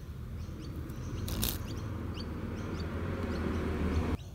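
Christmas beetle caught in a redback spider's web, buzzing its wings as it tries to fly free: a low steady drone that grows louder. Birds chirp faintly in the background.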